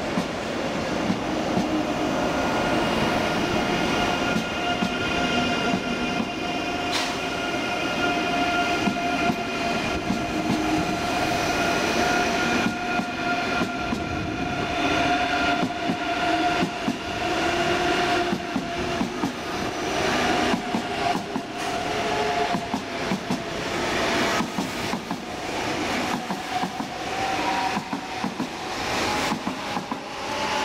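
ICE 3 high-speed electric train pulling out past the platform, its drive giving off several steady whining tones that creep upward in pitch as it gathers speed. Wheels click over rail joints, more often in the second half.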